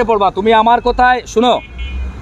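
A man speaking, over a low rumble.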